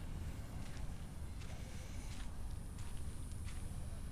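Footsteps on sand, faint and irregular, over a steady low rumble on the microphone.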